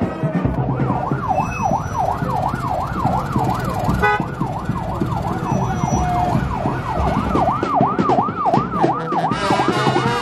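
Electronic vehicle siren yelping, rising and falling quickly about three times a second; it starts about a second in.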